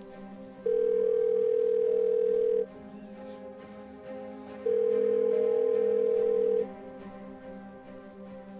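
Telephone ringback tone heard from the earpiece of a call that goes unanswered: two long, steady beeps of about two seconds each, two seconds apart, over quiet background music.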